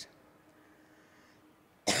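A near-silent pause, then near the end a woman's single short cough into a handheld microphone.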